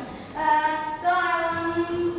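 A young female voice singing two long held notes of a song.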